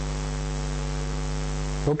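Steady electrical mains hum, a low buzz made of evenly spaced tones, with a constant hiss over it, carried by the microphone and recording chain during a pause in speech.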